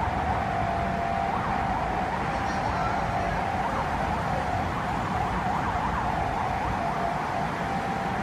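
City road traffic: a steady rush of cars with a high tone running through it that wavers up and down in the middle.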